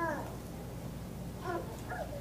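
A quiet pause with a few faint, short, high-pitched voice-like sounds: one rising-and-falling call at the start and two brief ones near the end.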